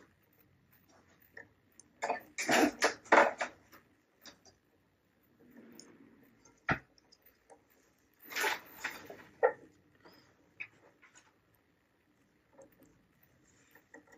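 Mostly quiet, broken by a few short breathy bursts from a person's nose and throat, one cluster a couple of seconds in and another past the middle, and a single sharp click about halfway through.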